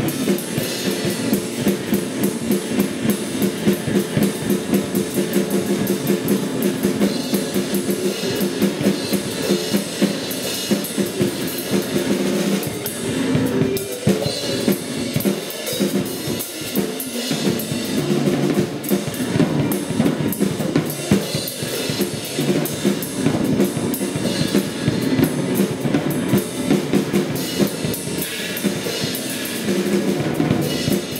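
Drum kit played in fast, dense strokes across drums and cymbals, over steady low tones from a second instrument, in live improvised music. The drumming thins out briefly about halfway through, then builds back up.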